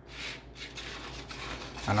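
Seasoned peanuts being pushed and spread across a baking sheet with a spoon: a steady scraping rustle of nuts sliding over the pan.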